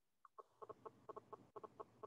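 Faint run of short, quick clucks, about a dozen in under two seconds, like a hen clucking.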